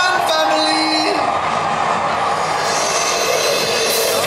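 Show intro over outdoor loudspeakers: a rushing, swelling noise that grows louder near the end, over the murmur of a waiting crowd.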